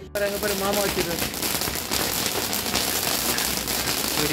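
Handheld firework on a stick spraying sparks: a loud, dense, steady crackling hiss that starts abruptly just after the beginning. Voices are heard briefly over it in the first second.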